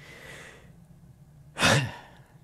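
A man sighing: a soft breathy exhale that fades out, then a short, louder breath about one and a half seconds in.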